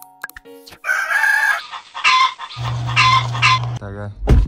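A rooster crowing: one loud, drawn-out crow in several parts. A low steady hum joins it about two-thirds of the way through.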